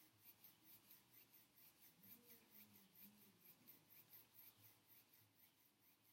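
Near silence: quiet room tone.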